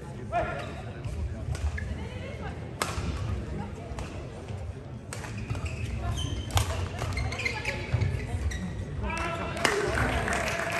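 Badminton rally in a large sports hall: sharp racket strikes on the shuttlecock, roughly one every second or so, with players' voices. The point ends near the end, and applause starts.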